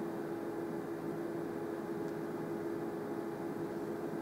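Steady hum and hiss of room tone, with no speech or other distinct events.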